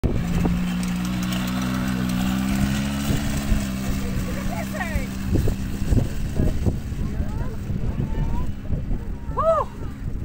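Quad bike (ATV) engine running with a steady hum, then pulling away and fading out about halfway through as it rides off across the sand. In the second half, gusty low rumbling and several short voice calls take its place.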